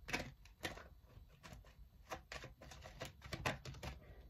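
Tarot deck being shuffled and handled by hand, heard as a faint, irregular run of soft card clicks and flicks.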